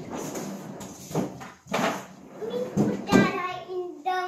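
A wooden spoon stirring stiff biscuit dough in a stainless steel mixing bowl, scraping round the metal and knocking against it several times, with a small child's voice in the second half.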